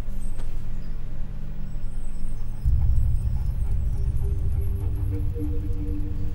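Steady low rumble of a car interior. About two and a half seconds in it is joined by a deep bass swell, then by sustained low notes of film-score music.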